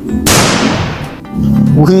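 A battery-operated toy pistol's electronic gunshot sound: one sudden bang that fades away over about a second, with background music underneath.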